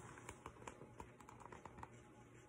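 Faint small clicks and light rustling of a picture book's paper pages being turned and handled.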